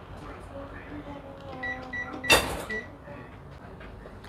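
Panasonic top-loading washing machine's control panel beeping as its buttons are pressed: several short, high, single-pitch beeps, with one louder, brief burst a little after two seconds in.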